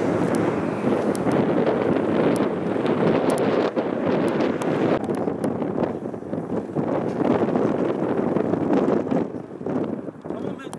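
Wind buffeting an outdoor microphone: a steady rushing noise that eases off near the end.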